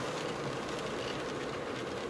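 Steady road noise heard inside a moving car's cabin: tyres on the road and the engine running at cruising speed.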